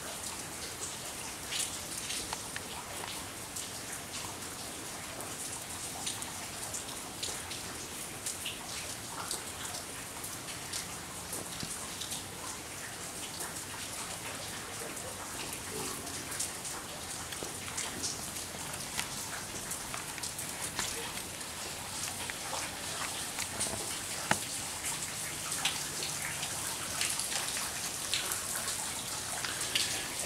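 Slow, steady drizzle falling on the water of a backyard swimming pool: an even hiss of rain with many small drop ticks.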